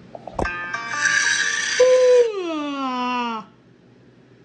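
A click, then a short bright chord-like jingle held for over a second, overlapped by a long pitched tone sliding steadily downward until it cuts off, like a sound effect from the animated video playing on the tablet.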